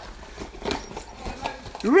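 Soft rustling of fabric with a few light knocks from a handheld phone being moved about.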